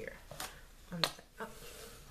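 Plastic squeeze bottle of lotion being squeezed onto a hand, giving short sharp clicks and squirts as the lotion comes out suddenly. The loudest click comes about a second in.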